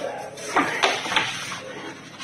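Three or four short, sharp knocks over a low, steady background.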